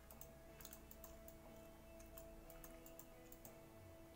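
A few scattered computer mouse clicks, quiet and at uneven intervals, over faint background music of steady held tones.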